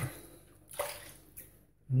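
Brief wet swishing of a shaving brush in lather: one clear swish about a second in and a smaller one shortly after.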